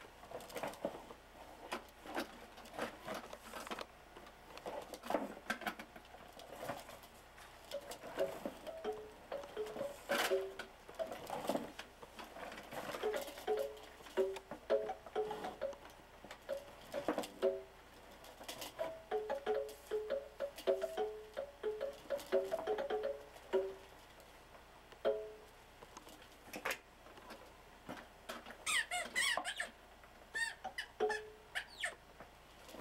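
Plastic ride-on toy car being rocked and steered by a toddler: a run of short squeaky notes at two alternating pitches, starting about a quarter of the way in and stopping a few seconds before the end. Plastic knocks and clatter sound throughout.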